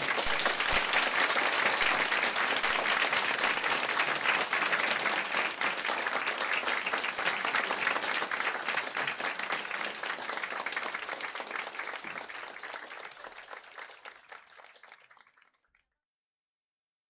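Audience applauding: a roomful of people clapping together, steady at first, then fading away over the last few seconds.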